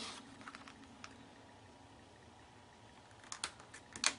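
Faint clicks and taps of cardstock handled by hands on a work surface: a few light ticks in the first second, a quiet stretch, then a short cluster of taps near the end.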